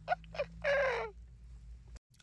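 A man laughing: a few short bursts, then one longer laugh about half a second in.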